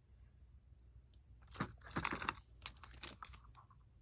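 Faint handling noise: a scatter of short clicks and taps as hard plastic PocketBac holders with metal keychain clips are picked up and turned in the hand, most of them in the second half.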